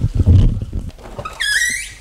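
Low rumbling handling and wind noise on the microphone as the handheld camera is swung quickly, then a short, high-pitched squeak that bends in pitch about a second and a half in.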